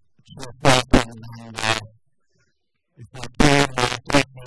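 A man speaking into a hand-held microphone in short phrases, with a pause of about a second in the middle.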